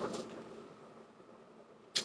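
Faint kitchen room tone, with a brief soft noise at the start that fades within about half a second.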